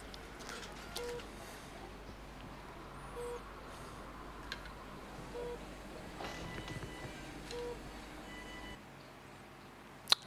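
Quiet intro of a music video: a short heart-monitor-style electronic beep repeating about every two seconds over a low hum, with a few faint clicks. The hum drops out near the end.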